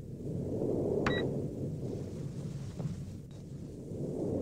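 Low, rumbling sci-fi ambient drone that swells and fades slowly, with a short, high electronic beep about a second in and a fainter blip near the end.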